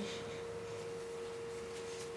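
A steady single-pitched whine, one constant pure tone, over faint background hiss.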